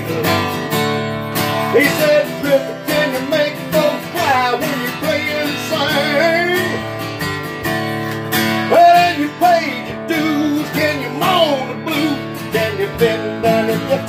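Acoustic guitar strummed in a steady country rhythm, an instrumental break between sung lines of the song.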